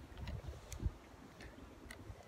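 Wind buffeting a phone's microphone in low, uneven gusts, with a few light, sharp clicks scattered through.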